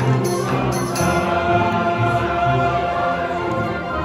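Large school choir singing held chords with instrumental accompaniment. A jingling percussion beat carries on into the start and stops about a second in.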